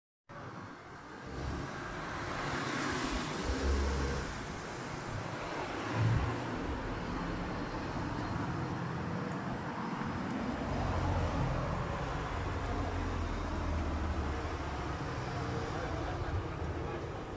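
Street traffic noise: a steady road hum with low engine rumble, swelling as a car passes about three seconds in, and a short low thump about six seconds in.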